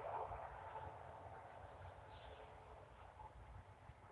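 Near silence: a faint outdoor background hiss with a low rumble, a little louder in the first second.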